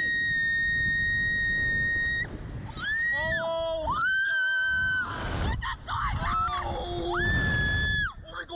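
Two riders screaming as a slingshot ride launches them upward, with wind buffeting the microphone. One long, high scream is held for about two seconds, then come shorter rising and falling screams and a noisy gust, and another long scream near the end.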